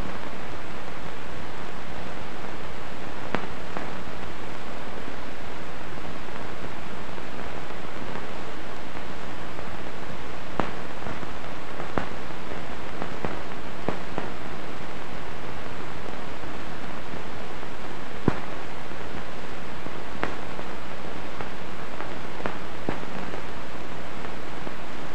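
Steady hiss with scattered clicks and pops, the surface noise of an old film soundtrack with no recorded sound on it; the sharpest click comes about eighteen seconds in.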